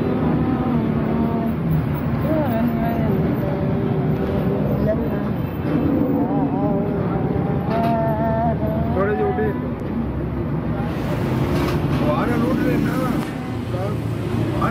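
People talking over a steady low background hum.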